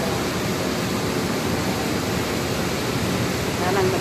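Steady rushing noise inside a city bus's passenger cabin, the running noise of the bus itself. A woman's voice starts near the end.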